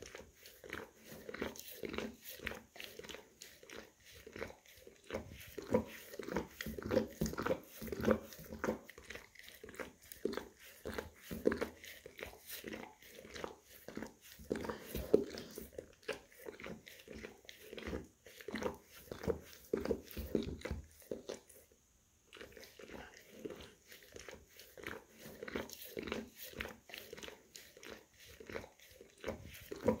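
Golden retriever licking and grooming his front paw, close up: a steady run of quick wet licks, several a second, with a short pause about three quarters of the way through.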